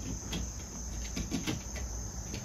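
A steady high insect trill carries on behind a few faint small clicks as the plastic phone holder is fitted onto the tripod head.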